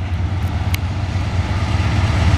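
Diesel locomotives of a freight train approaching, their engines a steady low rumble, with one brief tick about three-quarters of a second in.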